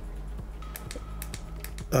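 Several small sharp clicks from the push button of an inline remote on a photo light box's LED light cable, pressed again and again to step the light through its settings.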